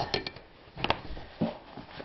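A few short, sharp clicks and knocks of handling as a piece of leather is set down on a sewing machine bed: a loud one at the start, a quick cluster right after, a pair a little before a second in and a softer knock after that.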